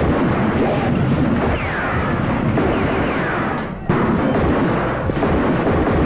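Loud, continuous explosion-like blasts and rumbling from a film soundtrack, with a couple of falling whistles in the first half and a brief break about four seconds in.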